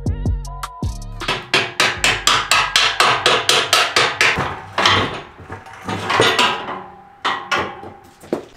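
Hammer blows on the metal trailer frame while freeing the leaf spring bolt: a fast run of ringing metal-on-metal strikes, about four a second, then a few more spaced groups of blows later on.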